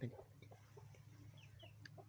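Near silence with faint chicken clucking from the yard's hens, and two short high chirps about a second and a half in.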